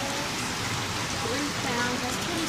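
Water pouring from a pipe and splashing into a live seafood tank, a steady hiss, with voices in the background.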